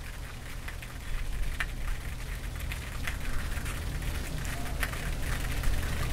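Car-wash foam dripping and trickling off a foam-covered SUV onto the concrete driveway: a faint patter of small drips and scattered ticks over a low steady rumble.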